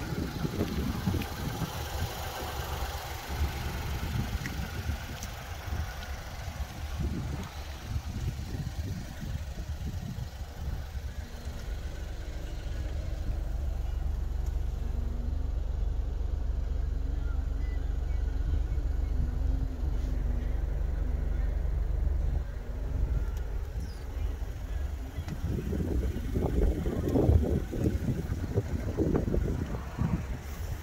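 Wind buffeting the microphone: a low rumble in uneven gusts, steadier through the middle stretch and gustier again near the end.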